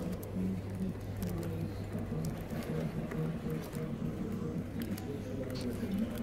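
Indistinct background voices with a little music, over a steady low hum, with a few light clicks scattered through.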